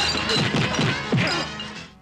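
Crashing and smashing of dishes and tableware in a brawl, over music; the commotion fades out near the end.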